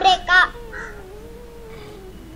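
A girl's high, sing-song voice finishing the word "Africa" in the first half second. After that comes a faint, slightly wavering held tone.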